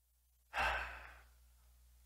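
A man's long sigh, starting about half a second in and trailing off over about a second.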